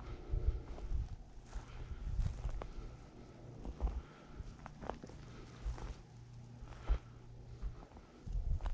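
Footsteps walking over dry, stony ground, irregular soft thumps with occasional sharper clicks.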